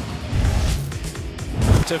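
Background music of a highlight package, with deep bass swells, the second and louder one near the end.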